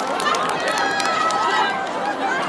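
Large crowd of many voices shouting and calling out at once, overlapping with no single speaker standing out.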